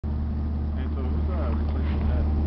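Steady low engine hum from an idling armored military truck, with faint voices of people talking in the background.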